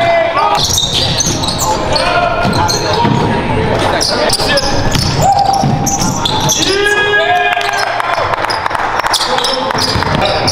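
Basketball being dribbled and bouncing on a hardwood gym floor amid players' indistinct shouts, echoing in the hall.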